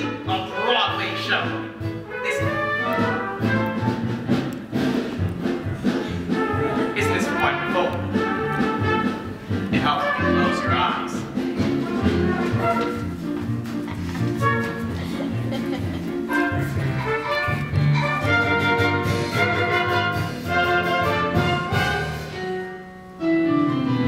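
Musical-theatre overture played by an orchestra, with brass leading, in a lively jazz style.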